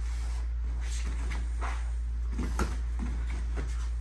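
Point-sparring exchange on a foam mat: feet scuffing and stamping, with padded gloves and foot pads striking in a scatter of short thuds, the sharpest about two and a half seconds in, where short grunts are also heard. A steady low hum runs underneath.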